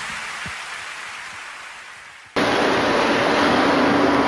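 The tail of a song fades away, then a little over halfway an abrupt cut brings in a boat engine running steadily, a low hum under a loud rushing noise.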